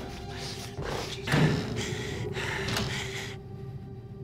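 Dramatic background music from a TV crime drama: a low held drone, with rustling scene sounds and a dull thud about a second and a half in. The rustling cuts off suddenly near the end, leaving the drone on its own.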